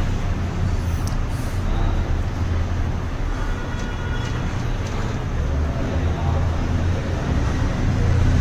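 Steady low background hum under a faint rustle of a cardboard phone box and its outer sleeve being handled and slid apart.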